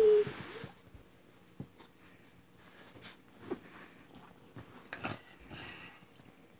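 Faint handling noise of hands moving plush toys: soft rustles and a few light knocks, after a short voiced sound and a breath right at the start.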